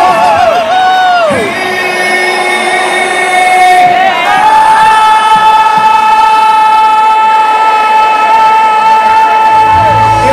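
A singer's amplified voice over crowd noise, wavering with vibrato and sliding down at first, then holding one long high note for about six seconds. The band's bass drops out under the voice.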